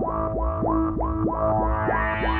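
ARP 2600 clone synthesizer (TTSH) playing a steady drone, with a short rising sweep repeating about three to four times a second over it.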